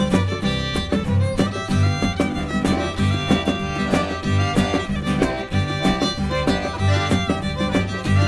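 Live Cajun/Creole band playing a two-step: button accordion and fiddle carrying the tune over acoustic guitar, upright bass and a drum kit keeping a steady, even beat.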